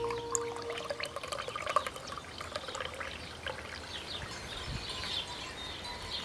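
Tea trickling into a ceramic mug, with light clinks of a spoon against the mug. Small birds chirp in the second half.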